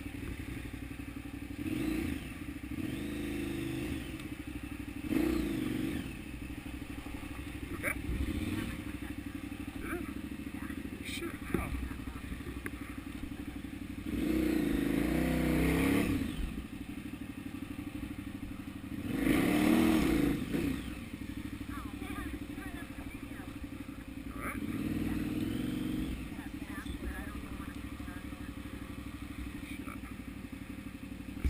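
KTM 990 Adventure's V-twin engine pulling at low speed up a rocky trail, with repeated bursts of throttle; the longest two, near the middle, last about two seconds each. A few sharp knocks from the bike over the rocks.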